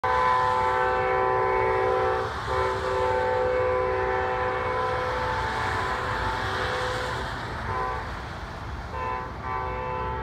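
Amtrak P40DC diesel locomotive's air horn sounding a multi-note chord in the long, long, short, long pattern, the warning for a grade crossing. The horn gives two long blasts, a short toot about seven and a half seconds in, and a final long blast starting about nine seconds in.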